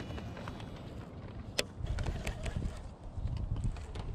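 Fabric rustling and rubbing against a chest-mounted camera's microphone while a baitcasting rod and reel are handled, with a sharp click about one and a half seconds in and a few lighter knocks.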